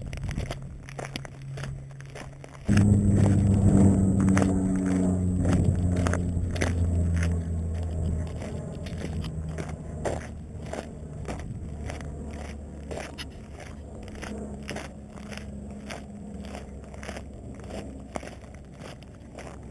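Footsteps crunching on a loose rock-and-gravel trail, about two steps a second. About three seconds in, a loud low droning hum cuts in suddenly, stays strong for several seconds, then carries on more faintly under the steps.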